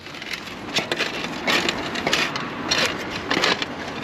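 Handling noise on a body-worn chest camera: fabric rustling and rubbing against the mount, with irregular small knocks and clicks.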